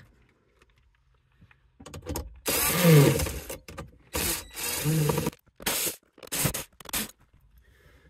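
A small driver backing out the 7 mm screws that hold the metal top radio bracket in place: several short bursts of tool noise with brief pauses between them, starting about two seconds in.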